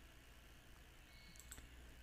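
Near silence: room tone, with one faint computer mouse click about one and a half seconds in.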